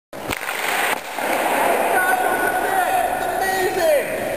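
A hockey stick slaps a puck on the ice with a sharp crack near the start, with the scrape of stick and skates on ice, followed by a man's voice calling out.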